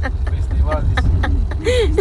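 Steady low rumble of a car's engine and tyres heard from inside the cabin while driving, with people's voices and laughter on top, loudest near the end.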